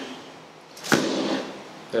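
A single sharp smack of a hand striking the partner's body, about a second in, as the finishing blow of an arm-lock technique.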